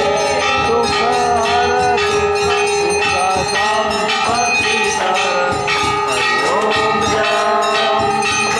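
Temple bells rung continuously and repeatedly during a Hindu aarti, with voices singing over the sustained ringing.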